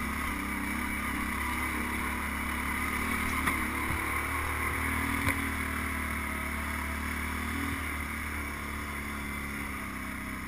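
ATV engine running steadily on a rough rocky trail, with a couple of brief sharp knocks about three and a half and five seconds in.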